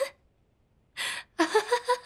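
A young woman laughing: a sharp breath in about halfway through, then a quick run of short laughs.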